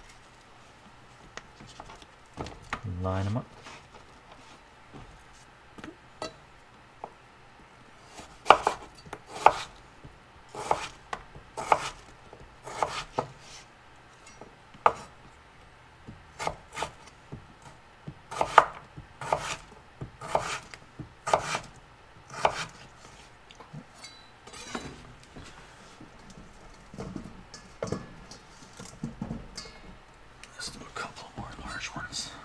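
Kitchen knife cutting raw potatoes into fries on a wooden cutting board: sharp knocks of the blade through the potato onto the board, coming irregularly, at times about one a second, thickest through the middle of the stretch.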